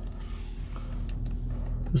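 Toyota Harrier's 2.0-litre Valvematic four-cylinder idling at about 1000 rpm, heard from inside the cabin as a low steady hum, with a few faint clicks.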